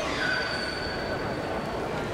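A steady high-pitched squeal, holding two pitches, that starts just after the start and stops near the end, heard over the murmur of people talking.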